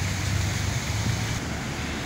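Steady rushing noise over a low, even engine hum: wind on the phone microphone and machinery or traffic around the street.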